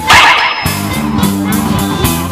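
A live rock band playing an upbeat tune with electric guitars, drum kit and trumpet, with a steady quick beat. A brief loud burst cuts in about a tenth of a second in, the loudest moment, then the band carries on.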